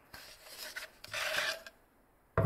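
Plywood pieces and a tape roll slid and rubbed across paper plans on a wooden tabletop: two short scraping sounds, the second, about a second in, louder.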